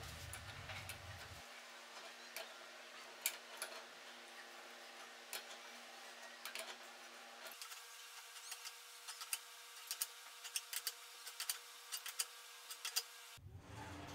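Faint metallic clicks and light scraping from locking pliers gripping and turning a steel nut on a bolt as it is tightened. The clicks are sparse at first and come more often about halfway through.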